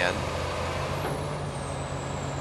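Komatsu PC410LC-5 excavator's diesel engine running steadily with a low hum while the hydraulics pull the stick in. Over it is a thin high whine that drops in pitch about a second in.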